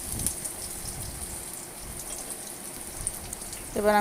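Chopped garlic and green chillies sizzling in hot oil in an aluminium wok: a steady, gentle crackle.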